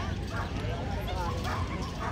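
Dogs yipping and barking over the chatter of people standing around.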